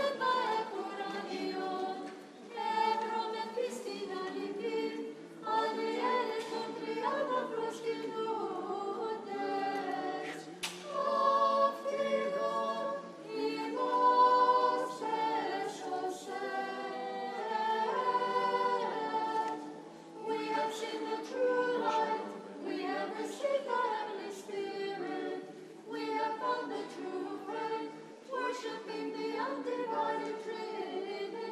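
Church choir singing a liturgical hymn in several voices, in continuous phrases that rise and fall and pause briefly every few seconds.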